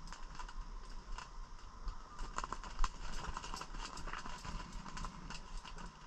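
Irregular light clicks and taps, coming thicker in the second half, over a faint steady high tone and a low hum.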